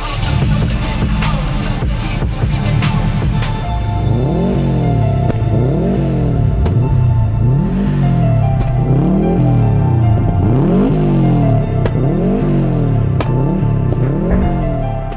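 Subaru Impreza WRX's turbocharged flat-four boxer engine, through an aftermarket exhaust, runs steadily for about four seconds and is then free-revved in about eight quick blips, roughly one a second, each rising and falling back. Music plays underneath.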